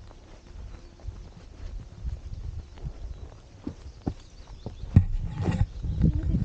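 Footsteps of walkers on a dry dirt path: irregular scuffs and crunches over a steady low rumble, with a louder thump about five seconds in.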